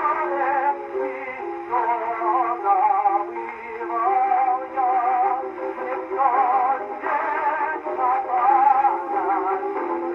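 Acoustic horn gramophone playing a reproduction 10-inch Berliner disc: a tenor sings an operatic cavatina with wide vibrato over an accompaniment. The sound is thin, with little treble, as on an early acoustic recording.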